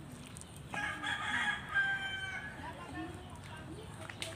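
A rooster crowing once, a single long call that starts suddenly less than a second in.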